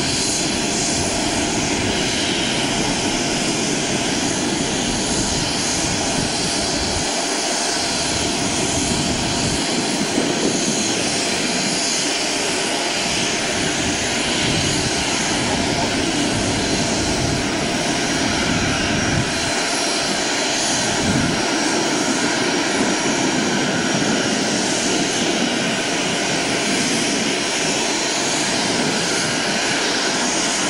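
Boeing 737 Classic's twin CFM56 turbofan engines running at low taxi power: a steady jet rush and rumble with a faint high whine on top.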